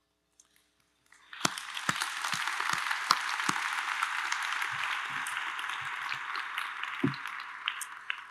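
Audience applauding, starting after about a second of silence and easing off slightly near the end.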